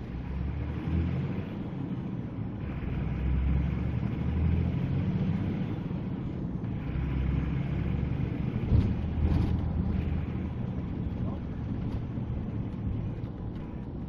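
Vehicle engine and road noise heard from inside the cab on a dashcam recording while driving, a steady low rumble. A single sharp knock about nine seconds in.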